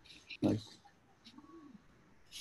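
A few light computer-keyboard key clicks as code is typed, with a faint low hum that rises and falls briefly about midway.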